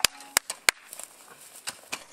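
Hand hoes chopping into dry, hard soil: several sharp, irregular strikes, most of them in the first second, with two fainter ones near the end.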